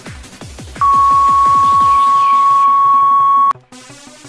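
Electronic intro music with quick repeated falling sweeps, then a single loud, steady electronic beep that starts about a second in, holds for nearly three seconds and cuts off suddenly, leaving quieter music.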